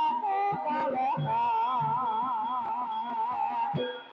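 Live Javanese gamelan music for a hobby-horse dance: regular low drum strokes under a high melody line that wavers in pitch.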